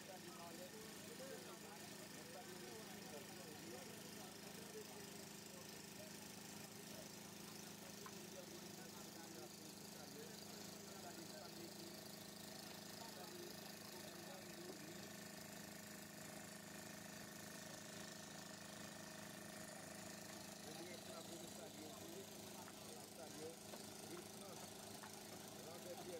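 Faint, distant chatter of several voices over a low, steady hum of background noise.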